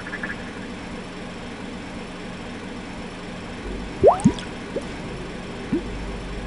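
Water dripping: two loud drops about four seconds in, then a few fainter ones, each a short rising plink, over a steady low hiss.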